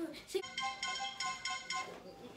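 Smartphone ringing tone as a FaceTime call is placed to add someone: a quick, repeating electronic melody from the phone's speaker, starting about half a second in and stopping just before the end.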